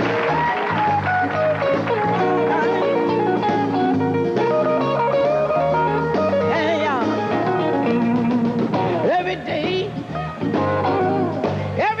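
Live band playing the slow opening bars of an R&B number, with held instrumental notes over a steady bass line. Near the end a singer's voice comes in over the band.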